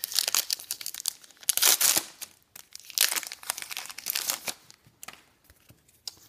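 A foil Pokémon trading card booster pack being torn open and crinkled by hand, in several irregular bursts of crackling, dying down near the end as the wrapper is done with.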